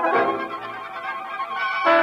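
A radio studio orchestra plays a short music bridge between scenes, with strings to the fore. A louder chord, with brass, comes in at the very end.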